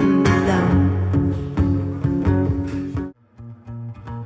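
Live electric guitar strumming chords, with steady low notes under them. About three seconds in the music cuts off abruptly, leaving a much quieter low tone.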